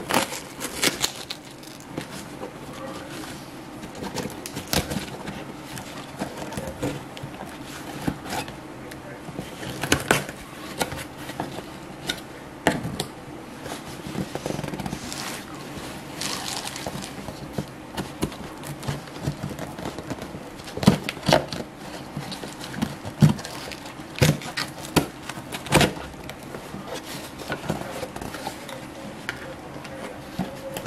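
A blade slitting the packing tape on a cardboard shipping box, then the box being handled and its flaps pulled open: irregular scraping, crackling and tearing with sharp clicks, loudest a little past the middle.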